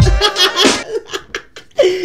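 A man laughing hard in a run of short, choppy bursts that fade after about a second. Music with a heavy bass cuts off just as the laughter starts.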